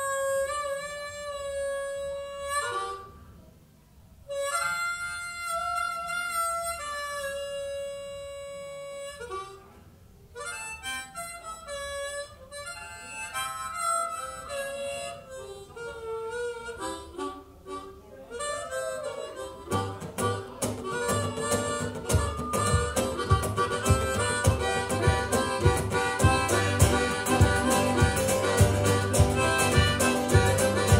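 Harmonica played into a vocal microphone, opening the song alone in phrases of long held notes and quicker runs with short gaps between them. About two-thirds of the way through, drums, bass and guitar come in with a steady beat under the harmonica.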